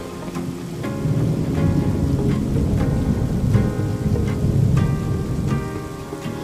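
Intro theme music with a steady beat, laid over a low rumble of thunder and rain sound effects.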